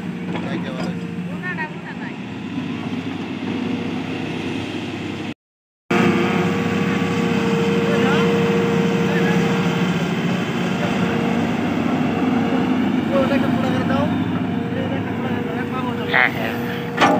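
Tata Hitachi crawler excavator's diesel engine running steadily under load while it digs, with voices chattering over it. The sound cuts out completely for about half a second a third of the way in.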